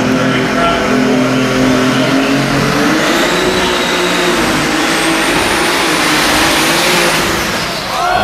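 Pulling tractor engine at full throttle, dragging a weight-transfer sled down the track. The engine note climbs about three seconds in, holds high, and falls away slightly near the end.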